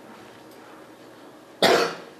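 A single short cough near the end, over faint room noise.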